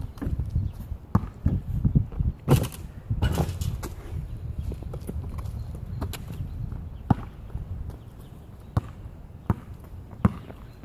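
A basketball bouncing on an asphalt street as it is dribbled: irregularly spaced sharp bounces, over a low rumble that fades about halfway through.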